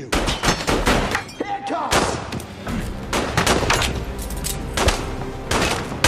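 Handgun gunfire in film sound design: a long, rapid, irregular volley of loud shots in quick succession.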